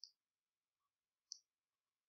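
Near silence broken by two faint computer mouse clicks, about a second and a quarter apart.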